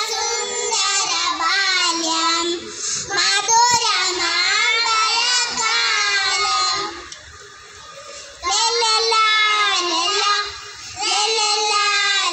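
A group of young kindergarten children singing a Malayalam song together through stage microphones, with a pause between phrases a little past halfway.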